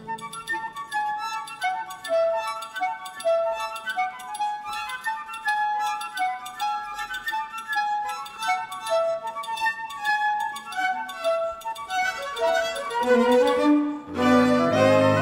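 Chamber orchestra playing with the low instruments silent, so a light, high melody of short, bright ringing notes carries the passage. Lower notes come back in near the end.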